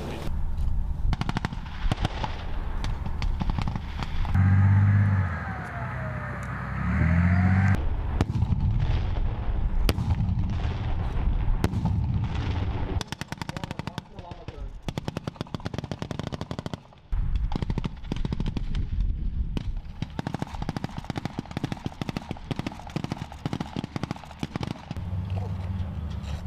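Bursts of automatic gunfire and single shots cracking out one after another over the low running of armoured vehicle engines. A louder low engine swell with a curving whine comes between about four and eight seconds in.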